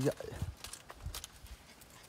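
Shiba Inu puppies' claws tapping on a plastic slatted floor as they scramble about: a scatter of light, irregular clicks.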